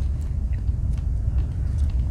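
A steady low rumble with a few faint light clicks from the small tweezers and toothpick of a Wenger Swiss Army knife being handled and slid back into its red synthetic scale.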